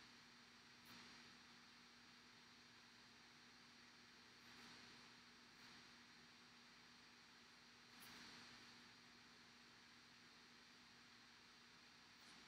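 Near silence: room tone with a faint steady hum and hiss.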